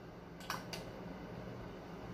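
A perfume bottle's trigger atomizer being handled: one short, faint click-hiss about half a second in, followed by a smaller click, over a steady low hum.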